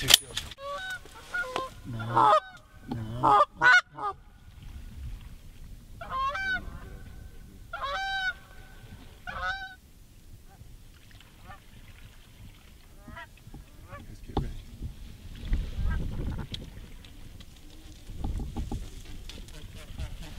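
Canada goose honking: a quick run of loud honks and clucks in the first few seconds, then three longer single honks between about six and ten seconds, with fainter calls after.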